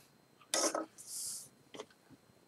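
A few quiet mouth and breath sounds from a man between sentences: a short murmur just after half a second, a soft hiss of breath, and a faint click near the end.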